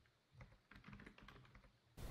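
Faint typing on a computer keyboard: a quick run of light keystrokes.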